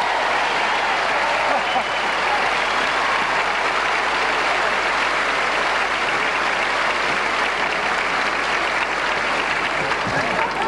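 Large theatre audience applauding steadily.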